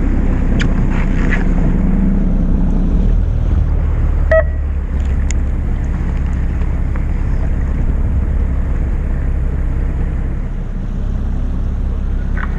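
A fishing boat's engine running steadily under wind on the microphone and water around the hull, with a short sharp sound about four seconds in.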